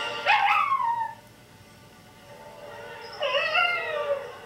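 A dog howling in two calls, each sliding up and then down in pitch. The first is short and sharp, near the start; the second begins near the end. The dog is howling along to opera singing.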